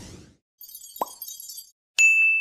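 Editing sound effects for an animated title card: a whoosh fading out at the start, then a high crackly sparkle with a short plop about a second in.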